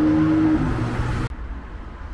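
Road traffic: cars passing on a multi-lane road with a steady engine hum. It cuts off suddenly just over a second in, leaving a quieter low rumble.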